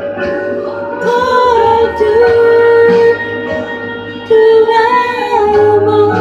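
A woman singing into a handheld microphone over accompanying music, holding a long note from about a second in, then breaking off and coming back in loudly past the four-second mark with a second long note.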